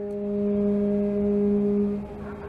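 Ship's horn sounding one long, steady blast.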